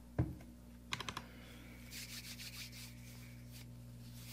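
Faint handling sounds close to the microphone: a soft thump, then a quick run of clicks about a second in, then about two seconds of scratchy rubbing, over a steady low hum.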